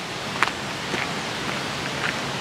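Steady rushing noise of creek water, with a few faint footsteps on the path.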